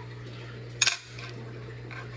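A single short metallic clink a little under a second in, a metal tool touching an aluminium chassis plate, over a steady low hum.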